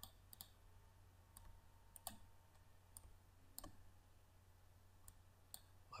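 Faint computer mouse clicks, about seven scattered irregularly, over a low steady hum, as shapes are drawn in a drawing program.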